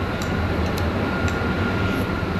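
Steady low mechanical hum with a faint, steady high whine over it: the background drone of a café.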